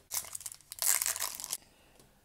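Wrapper of an Upper Deck MVP hockey card pack crinkling and tearing as it is ripped open, in two spells of rustling, the louder one about a second in.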